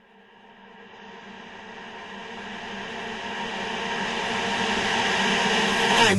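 A synthesizer intro fading in out of silence: a sustained drone with a hissing noise wash that swells steadily louder, building up into an electronic dance track.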